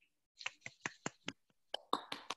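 Hands clapping over a video call: a quick run of sharp, quiet claps starting about half a second in, roughly five a second.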